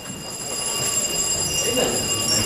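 Electric school bell ringing, a steady shrill ring, as the students leave the classroom at the end of a lesson.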